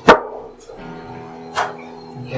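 A door banged open by hand: one sharp loud bang just at the start, with a short ring after it, over background music with steady held tones. A shorter, fainter noise comes near the end.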